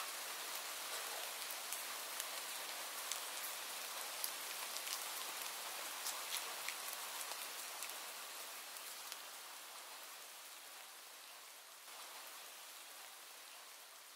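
Faint, steady rain with scattered drop ticks, slowly fading out over the last few seconds.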